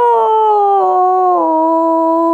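A woman singing one long held note with no accompaniment heard. The pitch sags slowly and then drops to a lower held pitch about one and a half seconds in.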